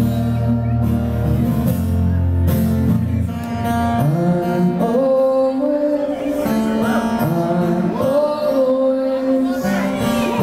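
Live solo acoustic guitar and a man singing, with long held notes over strummed chords. The low guitar sound thins out about four seconds in, leaving the voice over lighter playing.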